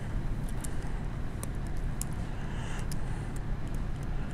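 A steady low room hum, with scattered light ticks and scratches of a stylus writing on a tablet screen.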